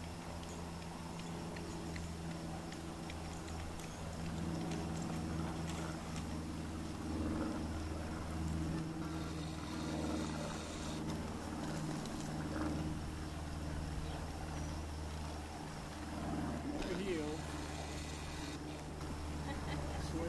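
An engine idling steadily with a low, even hum, and faint indistinct voices over it.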